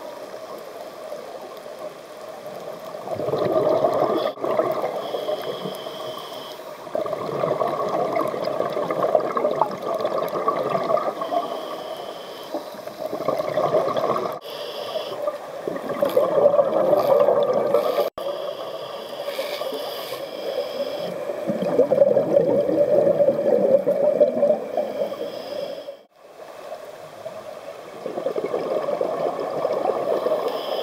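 Scuba diver breathing through a regulator, heard underwater. About six loud rushing, bubbling exhalations of a few seconds each alternate with quieter inhalations that carry a faint high hiss.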